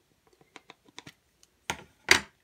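Faint, light clicks and taps of papercrafting supplies being handled on a work mat, with a louder click near the end.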